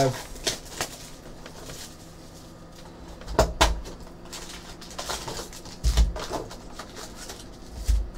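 A cardboard trading-card hobby box handled on a table, its packs being set out: a few soft thumps and scuffs, the heaviest around three and a half and six seconds in, with another knock near the end.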